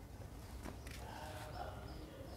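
Faint chicken calls, one drawn-out call about a second in, over low background noise.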